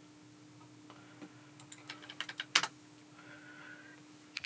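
A few light, scattered clicks from a computer mouse, bunched between about one and three seconds in with the sharpest near two and a half seconds, over a faint steady hum.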